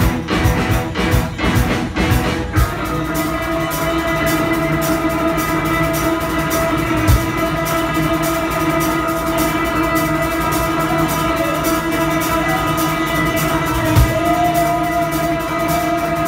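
Live rock band playing electric guitar, bass, keyboard and drums. For the first couple of seconds the band hits hard, evenly spaced accents together, then it moves into held chords over a steady, fast cymbal pulse.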